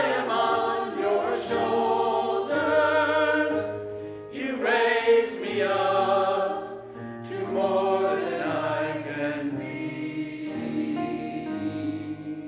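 Church choir of mixed men's and women's voices singing, moving through the phrases of a choral anthem and settling into a long held chord in the last couple of seconds.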